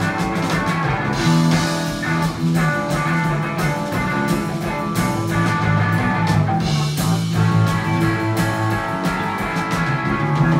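Live rock band playing an instrumental passage: electric guitar and bass guitar over a drum kit, with no singing.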